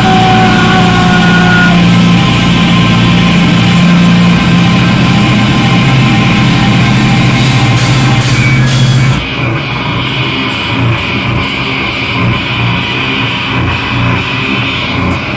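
Live heavy rock band playing loudly with electric guitars, bass and drums. About nine seconds in the full band drops away to a quieter, sparser guitar passage with light ticks.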